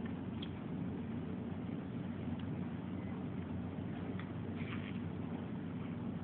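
A baby bottle-feeding: a few faint clicks from sucking on the bottle nipple, heard over a steady low room hum, with a brief soft squeak near the end.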